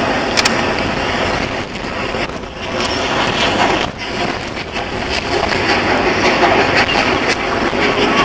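Bulleid Battle of Britain class steam locomotive 34067 Tangmere working a train, a continuous rushing noise mixed with wind on the microphone.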